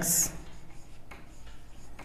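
Marker pen writing on a whiteboard: a short, high scratch at the start, then faint scratching strokes as numbers are written.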